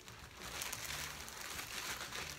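Clear plastic bag crinkling and rustling irregularly as it is handled and a fabric bag is pulled out of it.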